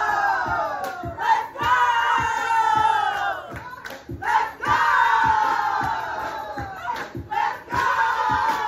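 Several women shouting together in long calls that fall in pitch, repeated about every three seconds, over music with a steady beat.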